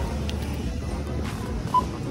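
Background music over store noise, with a single short beep from a self-checkout scanner near the end.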